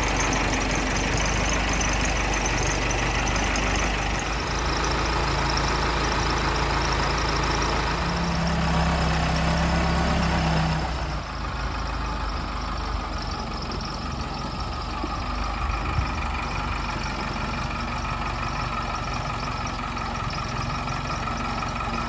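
Backhoe's diesel engine running steadily while it lifts a roof panel on slings. It runs harder for about three seconds starting about eight seconds in, then drops back to a quieter, steady run.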